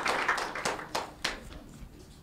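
Scattered hand clapping that thins out and dies away over the first second and a half.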